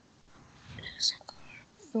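Soft whispering under the breath, hissy and without voice, loudest about a second in.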